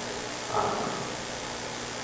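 A pause between sentences: steady hiss of the recording's background noise, with a faint brief voice-like sound about half a second in.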